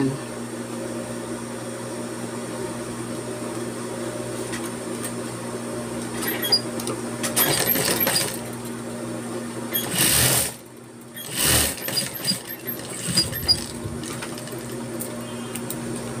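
Industrial sewing machine running steadily as fabric is fed through it, topstitching a bias-bound apron neckline. About ten seconds in the steady sound gives way to two loud, noisy bursts with a brief quieter gap between them, then the machine runs on.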